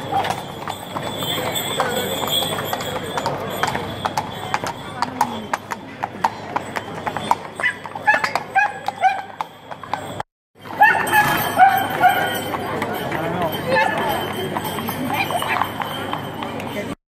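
Shod horses' hooves clip-clopping on stone paving as horse-drawn carriages pass, with people talking around them. The sound cuts out completely for a moment a little after ten seconds in.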